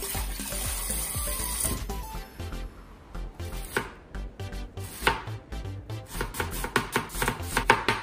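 Kitchen tap water running into a stainless steel bowl for the first couple of seconds. Then a knife chops cabbage on a plastic cutting board: a few strokes at first, quickening into fast, even chopping over the second half.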